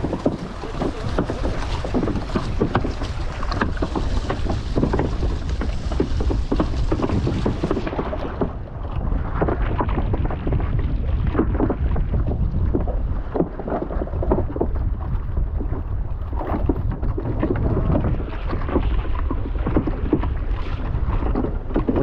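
Wind buffeting the microphone, over waves sloshing and slapping against a floating wooden footbridge that moves with the chop.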